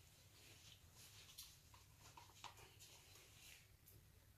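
Near silence: room tone with a low hum and a few faint, brief clicks and rustles.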